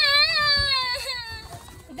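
A five-year-old boy crying out in one long wail that starts loud, slowly drops in pitch and fades away over about a second and a half; he is crying because he has just popped his balloon.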